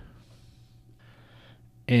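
A quiet pause over a faint steady hum, with a soft intake of breath about a second in before a man's voice resumes at the very end.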